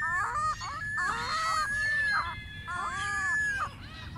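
Ring-billed gulls calling: a quick run of overlapping high, arching cries, several a second, with a short lull near the end. The calling comes from a pair that is courting.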